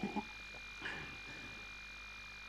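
Quiet pause in an old radio-play recording: low steady hiss with a thin, steady high-pitched whine, and a couple of faint soft sounds, one just after the start and one about a second in.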